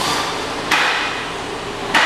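Hammer blows on metal, one about every 1.2 seconds, each ringing out after the strike.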